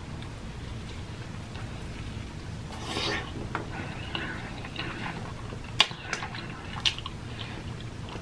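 Close-miked chewing of a ranch-covered fried chicken sandwich: soft, wet mouth sounds with a couple of sharp clicks in the second half.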